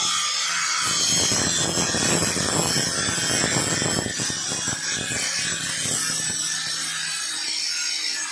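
Handheld electric angle grinder with an abrasive disc grinding a metal workpiece clamped in a vise, the motor running steadily under load with a rough, continuous grinding sound over a low motor hum.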